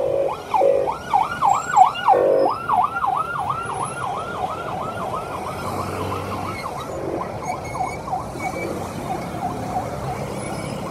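Convoy escort vehicle's siren on a fast yelp, rising and falling about four times a second. It is loudest in the first few seconds and fades as the vehicle moves off, with a few short horn blasts near the start.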